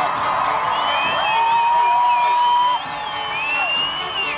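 Audience cheering, with long whoops and whistles rising over the top, while fiddle music plays more quietly underneath.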